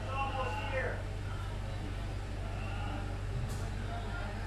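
Steady low drone of a diesel locomotive engine idling, heard from inside its cab, with a man's voice briefly at the start.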